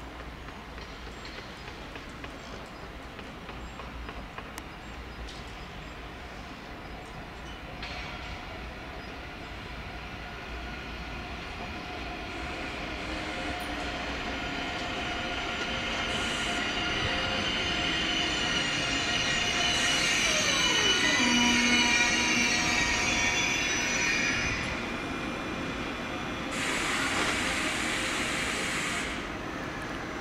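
ICE 3 high-speed electric train pulling in and braking to a stop. Several high squealing and whining tones build up, with one falling in pitch as it slows, loudest about two-thirds of the way through. A burst of hiss follows near the end.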